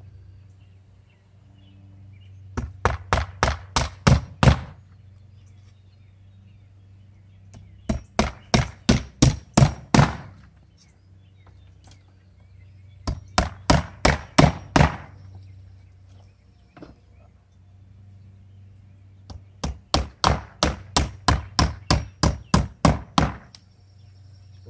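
Hammer driving nails into cedar bevel siding boards: four runs of quick strikes, about four or five a second, each run lasting a few seconds with pauses between, the last run the longest.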